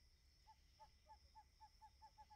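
An owl hooting faintly: a run of short, evenly pitched notes, about four a second, that speed up near the end.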